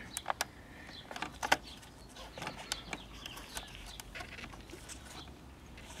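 Faint, scattered light clicks and taps from hands handling an opened portable television chassis, the loudest about one and a half seconds in, over a low steady hum.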